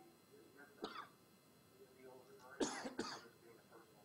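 A person coughing: one short cough about a second in, then two louder coughs close together near the three-second mark, over faint speech.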